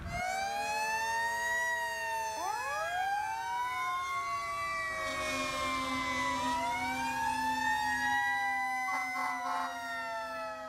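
Fire engine sirens wailing, several at once and out of step, each rising slowly and then falling away, with a low steady tone joining about halfway.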